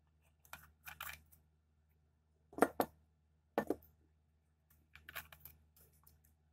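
A glass beaker being handled and moved on a tabletop: a string of short knocks and scrapes, the two loudest knocks about a second apart near the middle.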